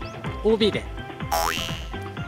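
Upbeat background music with comic sound effects: a tone that swoops up and down in pitch about half a second in, then a short rising whoosh near the end as an out-of-bounds caption comes up.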